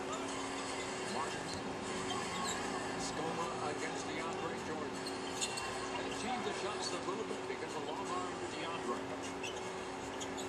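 Faint handling of a paper checklist sheet and a hard plastic card holder: small rustles and clicks over a steady low hum.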